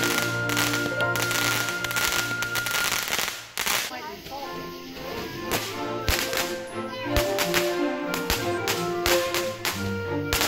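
Background music with layered sustained notes, which dips briefly about three and a half seconds in. Under it come the irregular cracks and pops of fireworks fountains spraying sparks.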